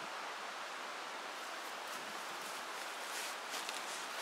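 Steady outdoor woodland background of leaves rustling in a light breeze, with a few faint rustles near the end.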